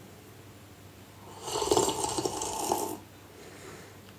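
A person slurping a drink from a glass mug: one noisy slurp about a second and a half long, starting just over a second in.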